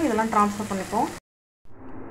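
Shallots, garlic and tomato frying in a pan, a faint sizzle under a woman's talking, until the sound cuts to dead silence a little after a second in.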